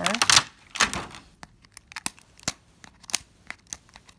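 Plastic wrapping on a cardboard toy tube crinkling as it is handled, a run of scattered crackles.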